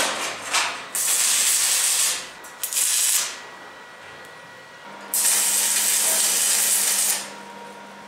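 MIG welder laying short welds on steel sheet and frame: three bursts of arc crackle, about a second, half a second and two seconds long, after a sharp metal tap at the start.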